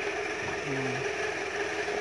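A steady whirring machine hum, with a short low murmured voice about half a second in.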